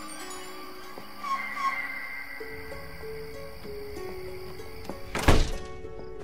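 Soft, slow film score of held notes stepping in pitch, with a loud single thud about five seconds in as a door shuts.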